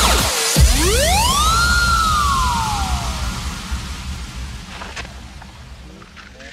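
UK happy hardcore electronic dance music with a synth sweep. The sweep dips, swoops up about two seconds in, then glides slowly back down. Meanwhile the track steadily fades out, with a single click near the end.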